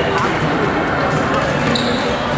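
Badminton rackets striking shuttlecocks in short, sharp cracks from several courts at once, over a steady background of voices in a large hall.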